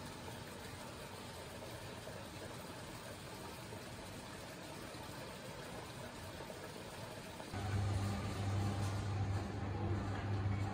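A soft, steady noise from a running top-loading coin-laundry washing machine. About three-quarters of the way in, it gives way to a louder, steady low hum from a running drum clothes dryer.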